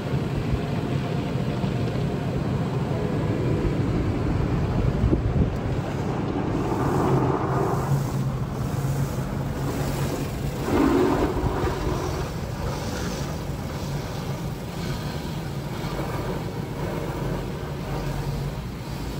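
Automatic car wash heard from inside the car: rotating brushes and water spray washing over the windshield and windows, a steady rushing with a low machine hum. It swells louder twice, around the middle, as the brushes pass.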